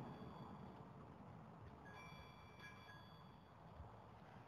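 Near silence: room tone, with faint high ringing tones near the start and again from about two seconds in.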